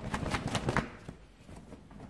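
A short burst of quick rustling and light clicking in the first second, then it dies down to a few faint ticks.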